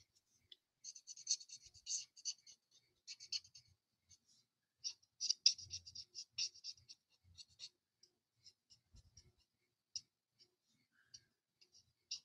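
Stampin' Blends alcohol marker tip rubbing across white cardstock while colouring in a stamped image: faint, scratchy quick strokes in two dense runs, the first about a second in and the second near the middle. Scattered light ticks of the marker on the paper follow toward the end.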